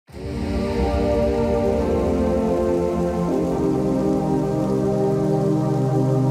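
Intro music: held synth chords that shift to a new chord about three seconds in, over a soft hiss that fades during the first few seconds.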